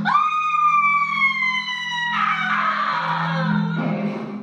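A woman's high, held scream that starts suddenly and slowly slides down in pitch, turning rough and noisy about halfway through. It sits over a low, steady drone of stage music.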